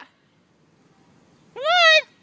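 German shepherd giving a single short, high-pitched whine that rises and then falls, about one and a half seconds in.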